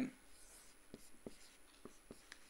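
Marker pen writing on a whiteboard: a few faint, short taps and strokes of the tip against the board.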